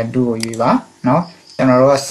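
A man speaking: narration in a language other than English, with short pauses between phrases.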